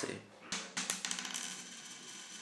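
Logo-transition sound effect: a sharp hit about half a second in, a quick cluster of clicks, then a high shimmering ring that slowly fades.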